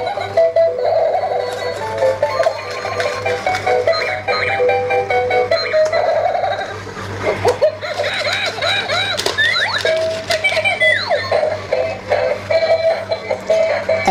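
Battery-powered dancing monkey toy playing its built-in electronic tune, a beeping melody, with a run of quick sweeping chirp effects in the middle.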